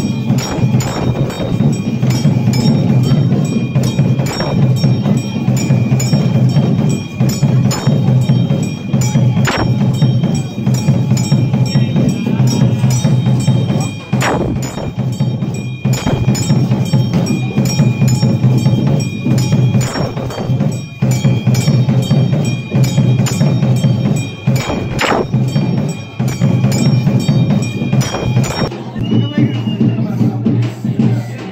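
Bells and percussion sounding in a fast, continuous rhythm, with steady bell ringing over the strokes and a louder ringing stroke about every five seconds. This is typical of the bells and drums sounded during a Hindu temple wedding rite.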